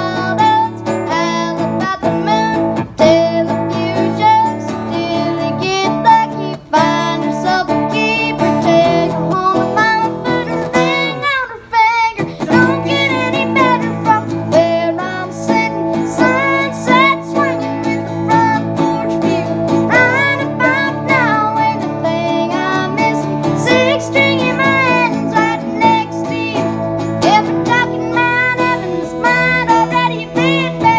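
A boy singing a country song through a microphone, accompanied by two strummed acoustic guitars, all amplified through a PA system, with one brief break partway through.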